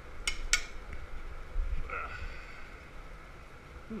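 Two sharp knocks about a quarter second apart as a glass piece is knocked off a steel blowpipe, then a brief tone about two seconds in, over a low steady hum.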